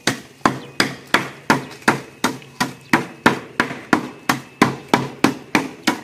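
A wooden stick pounding a plastic bag on a board in steady, even strokes, about three a second.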